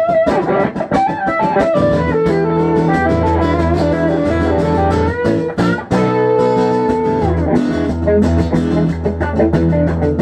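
Live blues played on guitars with no singing: electric guitar lead lines over a second guitar's accompaniment and low bass notes. About six seconds in a note is held for about a second, then slides down.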